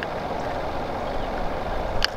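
Steady low rumble with an even hiss, the background noise on a small fishing boat, with no distinct event.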